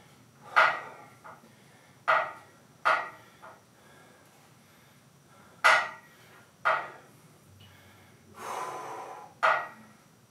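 A man's sharp, forceful breaths, about six short puffs spaced irregularly, with one longer breath shortly before the last puff, as he strains through a held single-leg isometric ankle exercise.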